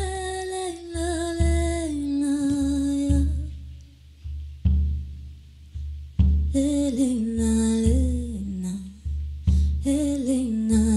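A woman's voice joiking in Sámi style, holding long notes and gliding between pitches, over a slow, steady low drum beat. The voice stops for about three seconds in the middle while the beat goes on, then comes back with falling slides.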